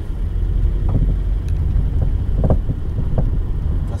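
A car rolling along the road, heard from inside the cabin: steady low tyre and road rumble with four irregular short knocks from the rear of the car.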